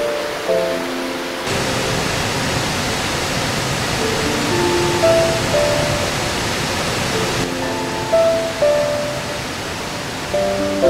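Background music of slow, decaying notes, joined about a second and a half in by the steady rush of water pouring over a sabo-dam weir, which fades back out after about seven and a half seconds.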